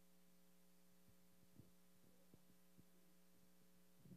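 Near silence: a faint steady electrical hum, with a few faint clicks in the middle.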